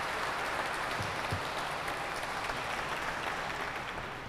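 Audience applauding: a steady patter of many hands clapping that begins to ease off near the end.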